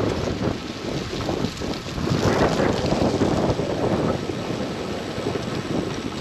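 Wind rushing over the microphone of a camera on a moving road bicycle, a steady noise that rises and falls in level.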